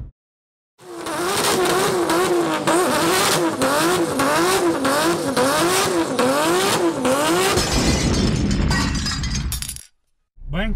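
Vehicle engine sound, revving up and down over and over with a wavering pitch. It starts about a second in and cuts off just before the end.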